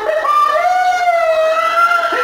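A person's voice holding one long drawn-out call, its pitch rising slightly about half a second in and then wavering gently.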